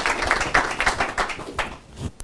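A small group applauding, many hands clapping at once, thinning out and dying away near the end.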